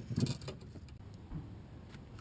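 Handling noise on a small fishing boat as a just-landed fish is taken in hand: a short cluster of knocks and rattles in the first half second, then quieter low rumble with a few faint clicks.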